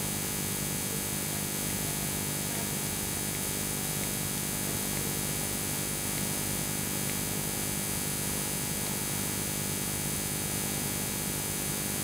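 Steady electrical mains hum with hiss, unchanging throughout, with no speech over it.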